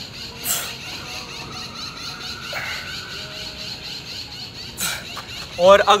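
Two short, sharp breaths out, about four seconds apart, from a man doing push-ups with a stone-weighted backpack on, over a low steady background.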